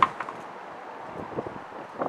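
A gloved hand scooping seeds and pulp out of a halved winter melon: a sharp click at the start, a couple of lighter ticks, then faint scraping.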